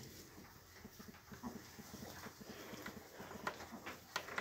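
Pot-bellied pigs grunting softly in a quick, even run of short low grunts, with faint rustles of straw.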